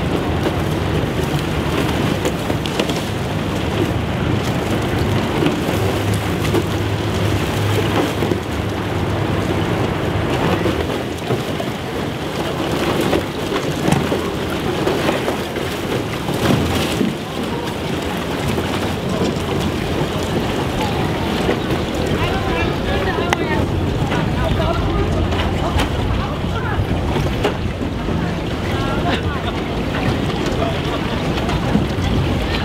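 Pack ice cracking, breaking and grinding along the hull of a river hotel ship as it pushes through, with sharp cracks now and then over a steady low hum from the ship. Wind noise on the microphone.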